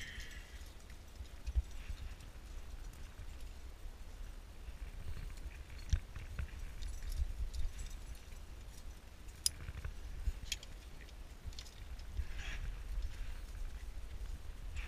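Low wind rumble on the microphone, with a few scattered sharp clicks and knocks from the climber's metal gear, carabiners and quickdraws, as he moves up the rock and clips the rope.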